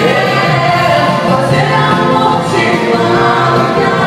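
Loud, continuous live dance music: a saxophone playing along with voices singing.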